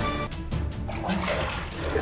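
Water splashing from about a second in as a hand snatches at a baby crocodile in shallow water, over background music with a steady low beat.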